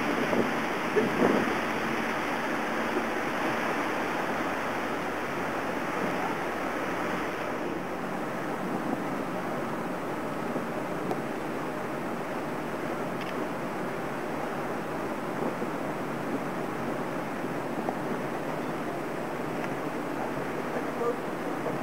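Steady rush of wind on the microphone and water moving past a tour boat under way.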